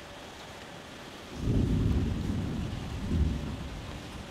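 A low rumble that starts suddenly about a second and a half in and lasts about two seconds, swelling once more near the end, over a steady soft background hiss.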